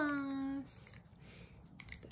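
A voice holding one drawn-out syllable that falls slightly in pitch, then faint scraping and a few light clicks from makeup being crushed with a small spoon.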